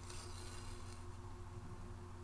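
Quiet room tone with a steady low electrical hum, and a faint soft rustle in the first second as yarn is threaded through a paper craft heart.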